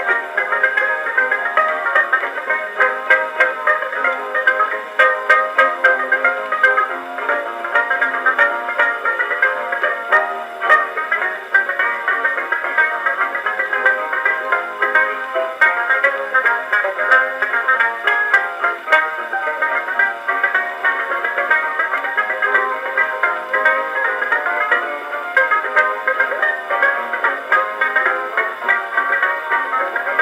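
A circa-1910 Columbia 'Sterling' disc graphophone playing a 1906 Victor 78 rpm record of ragtime from a banjo and harp-guitar trio through its horn. A fast plucked banjo melody runs over the accompaniment, and the sound is thin, with no deep bass.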